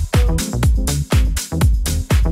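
Deep house dance music from a DJ mix: a four-on-the-floor kick drum at about two beats a second, with hi-hat strokes between the kicks and sustained synth chord notes.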